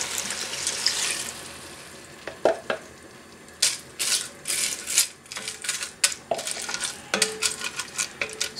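Broth poured from a plastic measuring jug into a hot pot of noodles and cabbage, hissing for about two seconds and then fading. After that come separate knocks and scrapes as the jug and a wooden spoon touch the enamelled pot and the spoon stirs the noodles.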